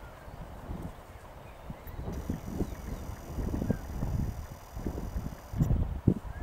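Gusty wind rumbling on the microphone, strengthening toward the end, with a few faint bird chirps.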